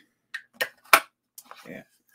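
Hand-held craft punch being squeezed through the edge of a cardstock box: three sharp clicks in the first second, the last and loudest about a second in as it cuts through easily.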